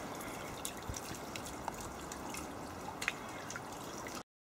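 Faint dripping of water: a few scattered light drips over a low, steady hiss.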